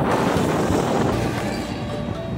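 Road traffic passing close by on a bridge roadway: a box delivery truck and cars making a steady rumble of tyres and engines.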